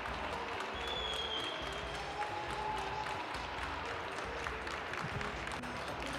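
Audience applauding steadily, a dense patter of many hands, with music playing faintly under it.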